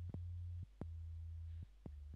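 Low, steady sine-wave tones from the Native Instruments Massive software synth, its oscillators pitched two octaves down: three held notes, each about half a second to a second long, with a click as each starts and stops. The pitch stays flat with no drop, the raw oscillators of a kick drum patch before any pitch envelope is applied.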